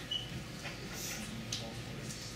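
Quiet classroom room tone with faint, indistinct voices and a few soft clicks, and a brief high squeak just after the start.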